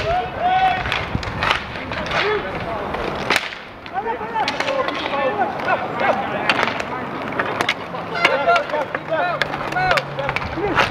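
Roller hockey in play: a string of sharp clacks from sticks striking the puck, each other and the boards, over inline-skate wheels rolling and scraping on the court.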